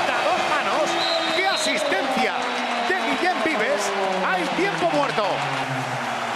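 Basketball game court sound: arena crowd noise throughout, with many short sneaker squeaks on the hardwood floor and a ball bouncing.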